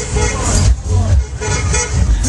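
Loud dance music from the fairground ride's sound system, with a voice over it. The heavy bass drops out briefly about a second in.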